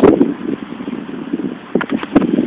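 A sharp knock as the hand-held camera jolts with the throw of a tennis ball, then wind and handling noise rumbling on the microphone, with a couple of faint clicks near the end.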